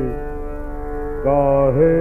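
Hindustani classical vocal in raga Yaman Kalyan, a male voice with tanpura drone and harmonium accompaniment, in a narrow-band old recording. A held note ends at the start, leaving the drone alone. The voice comes back in about a second later on a long note that dips and slides back up.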